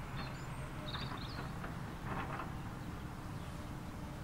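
A steady low rumble with birds chirping briefly over it about a second in.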